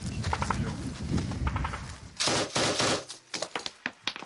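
Bursts of automatic gunfire from a machine gun: rapid sharp reports, with a long dense burst a little past halfway and scattered shots after it.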